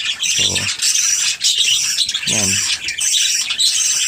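Pet parakeets (budgies) chattering continuously, a busy run of high warbles, chirps and squawks.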